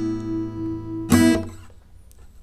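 Steel-string acoustic guitar: a chord rings on, then a second chord is plucked about a second in and fades away near the end.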